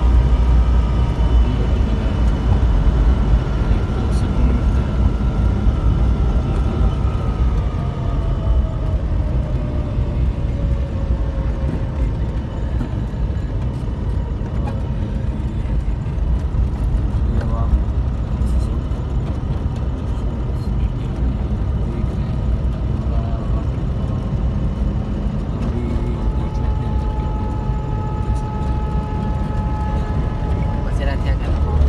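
Car cabin noise while driving: a steady low rumble of engine and tyres on the road, with faint whining tones above it, one sliding slowly down in pitch between about six and twelve seconds in.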